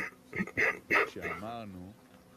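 A man laughing softly in a few short voiced bursts, ending in a longer wavering laugh sound, quieter than his reading voice.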